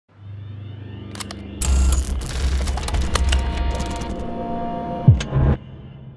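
A produced sound-effect sequence: a low hum and a few clicks, then a loud low rumble with steady ringing tones, a falling sweep near the end, and a sudden cut-off.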